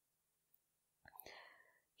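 Near silence, then a faint breathy vocal sound, like a soft in-breath or whisper, about a second in.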